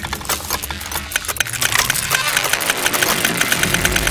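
Glitchy electronic IDM: a dense stream of rapid, machine-like clicks and buzzing over a steady low bass drone, growing slightly louder towards the end.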